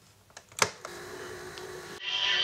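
Function knob of a portable reel-to-reel tape recorder being turned, giving a few small clicks and one loud click about half a second in as it is switched to play. The machine then runs with a steady hum.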